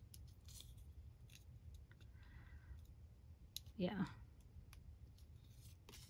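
Faint, scattered small clicks and a brief soft crinkle about two seconds in as fingers pick at transparent plastic stickers to peel one apart.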